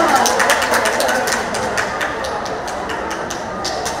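Football stadium ambience during play: a mix of distant voices and shouting from the stands and pitch, with many irregular sharp taps running through it.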